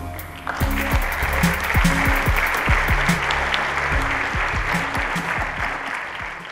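Audience applauding, starting suddenly about half a second in and fading away near the end, over background music with a steady beat.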